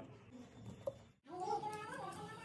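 A high-pitched, drawn-out wavering call, voice-like, begins a little over a second in after a quiet stretch with a faint click.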